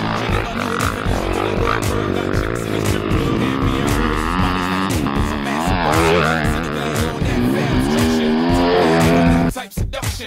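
Dirt bike engines revving up and down as the bikes ride the track, mixed with a song playing over them. Just before the end the engine sound cuts off, leaving the song.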